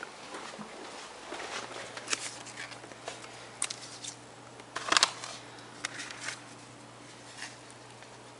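Plastic CD jewel cases and papers handled and shuffled through by hand: scattered light clicks and rustling, with one louder clack about five seconds in. A faint steady hum runs underneath from about a second and a half in.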